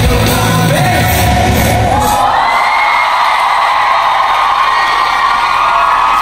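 Korean rock band playing live through an arena PA with sung vocals, heard from within the audience; about two seconds in the band's low end stops and the crowd keeps up loud, high-pitched screaming and cheering.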